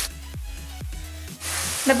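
Background music with a steady, repeating beat. The frying sizzle from the pan of chicken, onion and mushrooms drops away at first and comes back about one and a half seconds in.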